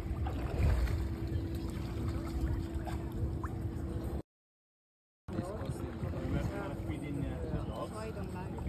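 Low rumbling wind noise on the microphone over a steady hum, with faint voices. The sound drops out completely for about a second just past the middle, then people's voices chatter in the background.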